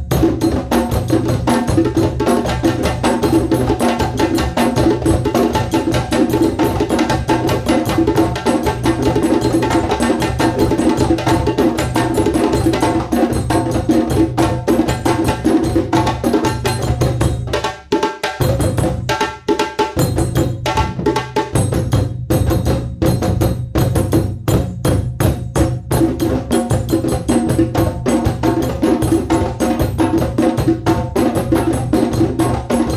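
West African drum ensemble playing together: djembes over stick-struck dunun bass drums, a fast, dense, continuous rhythm. About two-thirds of the way through, the deep drum tones briefly drop away, then come back in.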